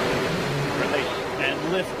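Atlas V 541 rocket at ignition and liftoff, its RD-180 main engine and solid rocket boosters making a dense, steady rushing noise, heard under voices.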